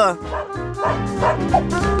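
Small dog, a Pomeranian, yipping several times in short bursts over background music.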